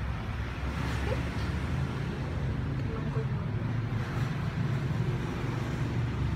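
Faint voices in the background over a steady low rumble.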